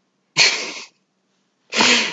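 A man's short, explosive burst of breath, a sudden noisy outburst about a third of a second in that lasts about half a second and fades. A second breathy burst follows near the end.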